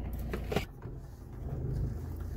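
Low, steady car-cabin rumble. A sharp click comes about half a second in, after which the rumble briefly drops away and then returns.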